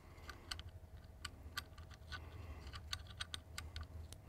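Faint, irregular light metallic clicks and ticks of small screws and the metal finder scope base being handled, as a screw is worked by hand into its thread on the telescope tube.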